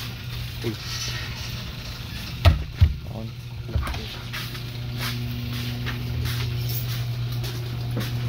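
A steady low hum inside a car, growing louder over the second half, with two sharp knocks in quick succession about two and a half seconds in.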